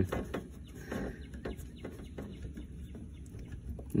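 Faint, scattered clicks and light scrapes of a 3/8-inch quick-connect disconnect tool being worked into a transmission cooler line fitting until it seats flush.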